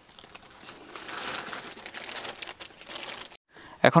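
Crinkling and rustling handling noise, a steady soft haze with small crackles, that starts about half a second in and cuts off suddenly a little after three seconds in.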